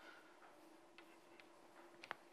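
Near silence broken by a few faint ticks of chalk on a blackboard as words are written, over a faint steady hum.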